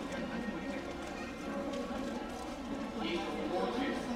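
Hoofbeats of lead ponies walking on the racecourse's sand track, under a steady background of indistinct voices.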